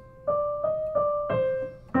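Piano playing a short single-line melodic motive: about four notes in quick succession, each struck and left to ring, the last one lower.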